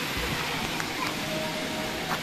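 Swimming pool water splashing and churning as people move in it, with children's voices faint in the background.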